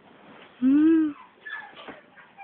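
Young Maltese puppy giving one short whine that rises and falls, about halfway through, with fainter higher squeaks after it.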